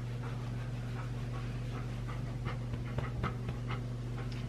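A large Bernedoodle panting softly in short, uneven breaths, over a steady low hum.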